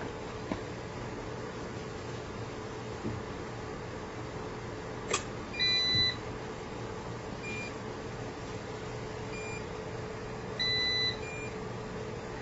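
Low-end UPS transferring to battery: a click about five seconds in, then its alarm beeper gives a half-second beep and beeps again about five seconds later, the warning that it is running on battery. A steady hum runs underneath.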